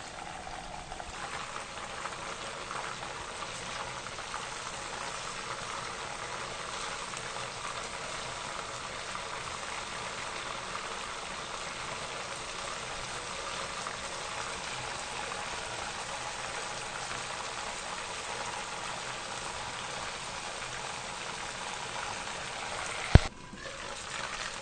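Chicken pieces deep-frying in oil mixed with a large amount of water, the oil bubbling and boiling vigorously with a steady hiss as the water boils off. One sharp click near the end.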